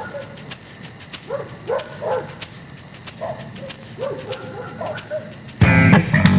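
A small dog yapping in short bursts over a film score with a steady ticking beat. Loud guitar music comes in near the end.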